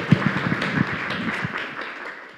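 Audience applauding, many hands clapping at once, dying away near the end.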